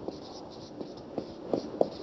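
Marker pen writing on a whiteboard: a series of short, quick strokes as letters are written out.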